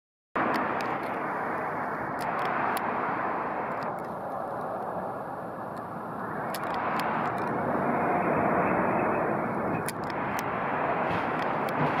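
Steady rushing road and engine noise of a car moving slowly, with a few faint high clicks scattered through it.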